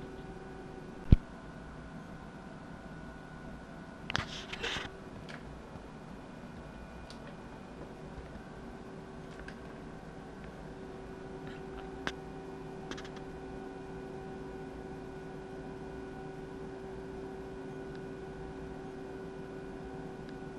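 Faint steady electrical hum with a few sharp clicks: a loud single click about a second in, a short cluster of clicks between four and five seconds, and a smaller click about twelve seconds in.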